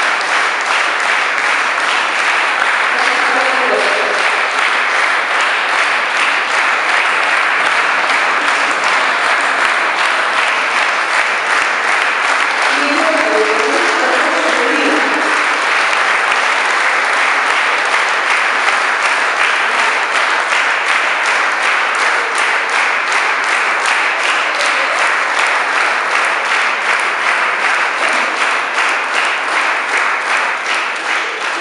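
Audience applauding: a long, steady applause with individual claps growing more distinct in the second half and easing slightly at the very end.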